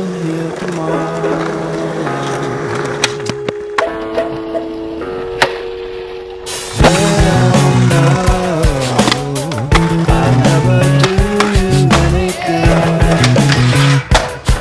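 A guitar song playing, held chords at first and then louder and fuller from about halfway, with skateboard wheels rolling on concrete and the clacks of the board's tail and deck over it.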